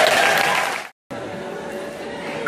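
Audience applauding and cheering, with a voice over it, cut off abruptly just under a second in; after a brief gap a quieter steady room noise follows.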